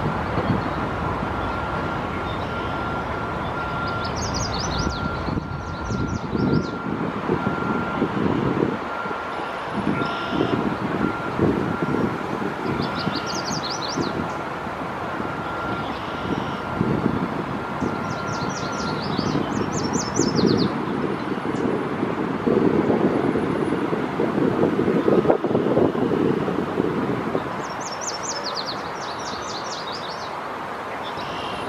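Steady rumble of road traffic that swells and fades, with a high, rapid trilled bird call heard four times. A faint steady high whine runs under the first two-thirds and then stops.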